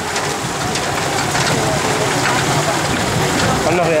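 Open four-wheel-drive vehicle moving along a rough jungle track: its engine runs under a steady rushing noise that grows a little louder. A voice comes in near the end.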